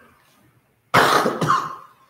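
A person coughing in a quiet church: a sudden, loud fit of two coughs about a second in, with a reverberant tail.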